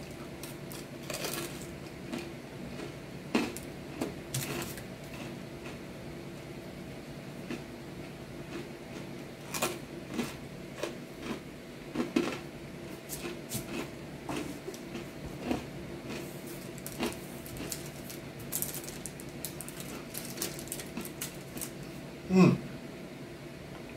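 A person chewing a bite of thin-crust pizza close to the microphone: irregular short clicks and crunches from the mouth, over a steady low hum.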